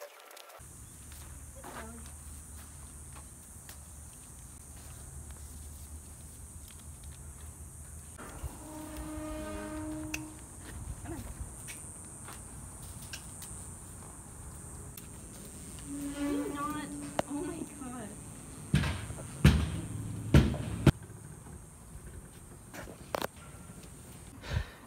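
Several sharp metallic knocks and clanks at a horse's metal-barred stall, loudest and closest together a little past two-thirds of the way through, over a low rumble of movement. Two brief held vocal sounds come earlier, one near the middle.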